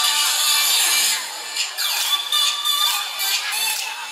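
Music playing; about a second in it drops in level and irregular rasping noises come over it.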